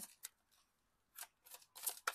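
Tarot cards being shuffled by hand: a faint tick, a short pause, then three quick swishes from about a second in, the last one the loudest.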